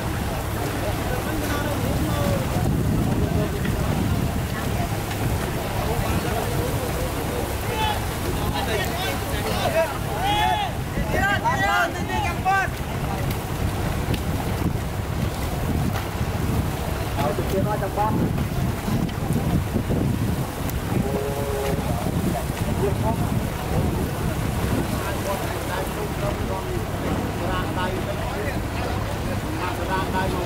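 Wind rumbling on the microphone over the splashing of a large crew paddling a long Khmer racing boat, with scattered shouts and calls from the crew, most of them about a third of the way in.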